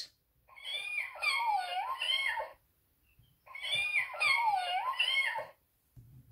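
Recorded cat meowing played from the small speaker of a children's sound book, sounding thin with no low end. The same clip of about two seconds plays twice, with a pause of about a second between.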